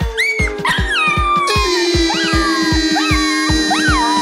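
Outro music with a steady thudding beat of about three a second, over which a small dog whines and yips in short high cries that rise and fall, several times.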